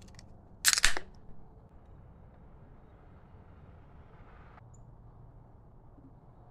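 A beer can opened with a short, sharp crack and hiss about a second in. Then porter is poured from the can into a pint glass, a faint steady pouring sound that cuts off suddenly after about four and a half seconds.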